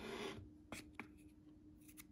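Wooden craft sticks stirring and scraping through a wet eco resin mix in a mixing bowl, stopping about half a second in, followed by two light clicks of the sticks. A faint steady hum runs underneath.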